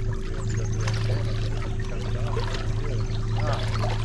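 A steady low electric hum with water trickling and pouring, from a bass boat sitting on still water.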